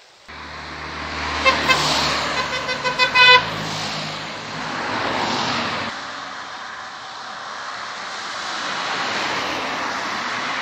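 A quick string of short horn toots, about six or seven, between roughly one and a half and three and a half seconds in. They sound over a steady low engine rumble, which drops away about six seconds in and leaves a broad vehicle-like noise.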